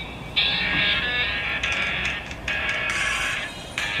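Mobile phone ringing with a musical ringtone, a tune in short repeated phrases played through the phone's small speaker, signalling an incoming call.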